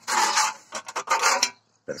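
Rasping scrapes in two bursts, one about half a second long and a second lasting nearly a second.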